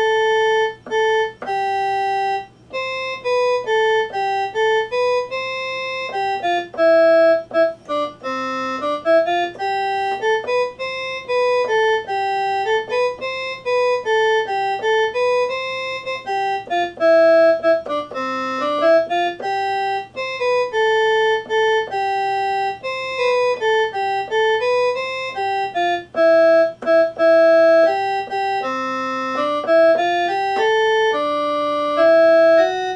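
Electronic keyboard played with a sustained, organ-like voice: a slow melody of held notes in two parts that move up and down step by step, with brief breaks between phrases.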